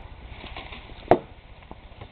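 A single sharp knock about a second in, then a fainter tick, over a quiet outdoor background.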